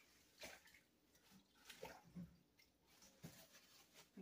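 Near silence, with a few faint, short rustles and taps of fresh mint sprigs being handled.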